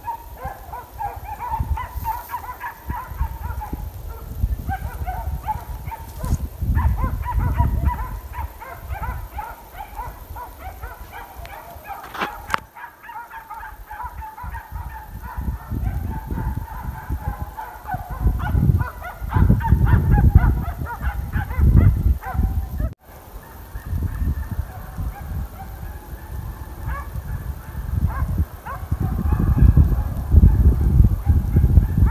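A pack of hare hounds baying in chorus, with many short, overlapping calls, as they work a hare's scent. Gusts of wind rumble on the microphone, strongest in the second half.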